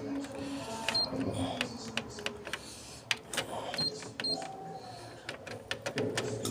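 Canon MF8280Cw printer's control panel giving short high beeps as its touchscreen keys are pressed: one about a second in, then two close together near the middle.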